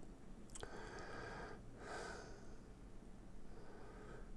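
A quiet room with a faint click about half a second in, then a soft breath out through the nose about two seconds in.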